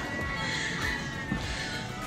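Faint music from a TV show playing on a tablet's speaker, a few held notes over a low background.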